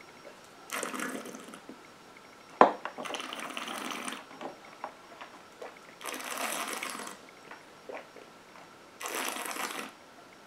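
A person tasting a sip of strong neat gin, drawing and blowing air through the mouth over the spirit in four hissy breaths spaced a few seconds apart. There is a single sharp click a little before the second breath.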